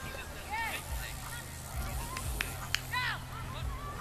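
Open-air ambience with a low steady hum and two short distant calls, a faint one just after the start and a louder one about three seconds in, with two sharp clicks just before the louder call.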